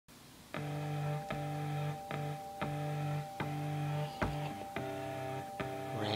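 Harmonium playing an instrumental intro: sustained chords that start about half a second in and change roughly every three-quarters of a second, over a high note held throughout, with a low thump where some chords begin.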